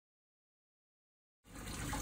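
Silence, then about one and a half seconds in a steady rushing noise fades in: water running in a leaking manhole.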